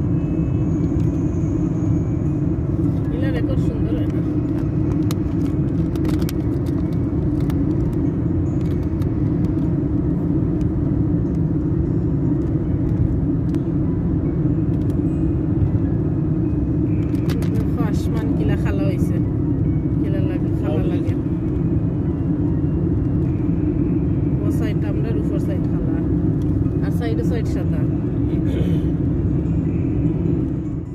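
Steady road and engine drone inside a moving car's cabin, with faint voices heard now and then.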